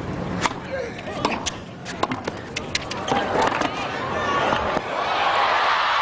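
A tennis rally with a string of sharp racket-on-ball hits and bounces at an irregular pace. About five seconds in, the crowd breaks into applause and cheering as the point is won with a put-away.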